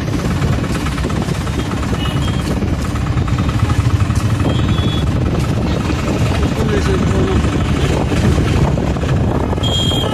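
A motor vehicle's engine running loudly under way, with an even rattling pulse, joined by voices of people along the road and a few brief high-pitched horn toots.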